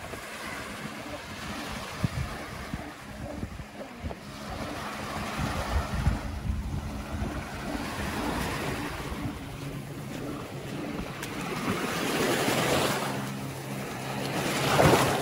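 Small Baltic Sea waves breaking and washing onto a sandy beach, the surf swelling and easing several times, with wind buffeting the microphone.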